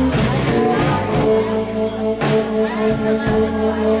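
Live electric blues band: an amplified harmonica playing long held notes over electric guitar, with drum and cymbal hits about once a second.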